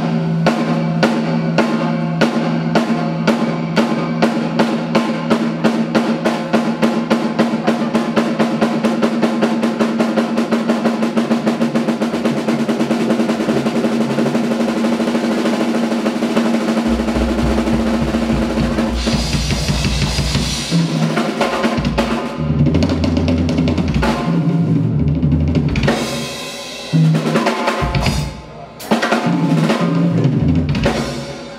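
Drum kit played live: snare strokes that speed up into a fast roll, then bass drum joins in, a cymbal crash about twenty seconds in, and broken fills across the toms and cymbals near the end.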